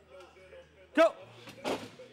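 A man's short, loud shout of "go!", a coach's cue for an explosive rep, followed about half a second later by a brief rush of noise from the rep, over faint background music.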